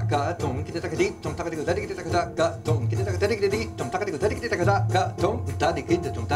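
Recorded jazz-fusion band played back through room speakers: a saxophone melody over drumset playing a Carnatic drum composition translated for kit, with a steady bass line underneath.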